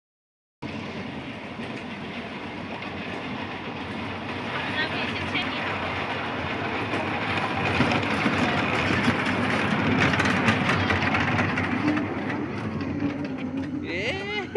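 Children's kiddie train ride running along its narrow track, a steady mechanical rumble that grows louder as the train comes near in the middle.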